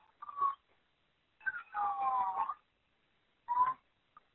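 A person's high-pitched moaning cries, three in all, the longest in the middle with a falling pitch, heard through a muffled, phone-quality recording.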